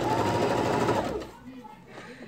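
Electric sewing machine running a fast burst of stitches through fabric layered over craft foam, with a steady motor hum, stopping a little over a second in.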